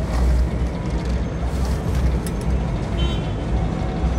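Steady low rumble of city street traffic with a general hiss of outdoor background noise.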